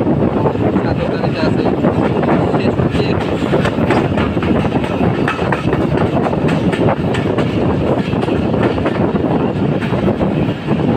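Passenger train of PT INKA-built coaches rolling past close by: a steady loud rumble of steel wheels on rail, with a stream of rapid clicks as the wheels cross rail joints.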